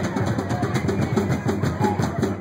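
Drum kit played live in a rock drum solo: a fast, even run of strokes, about six or seven a second.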